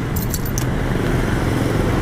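A bunch of keys jingling briefly in the hand during the first half-second, over a steady low engine rumble.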